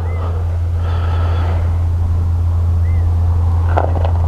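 Kawasaki KLR650's single-cylinder engine running steadily with an even low drone.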